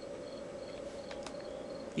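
Faint cricket chirping over a steady low hum, a short high chirp repeating about four times a second, with a few faint clicks near the middle.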